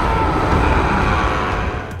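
Film action-scene sound mix: a loud, dense rushing rumble with faint wavering high cries inside it, easing off slightly near the end.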